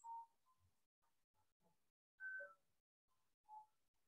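Near silence: faint room tone with three brief, faint tones, near the start, a little after two seconds and about three and a half seconds in.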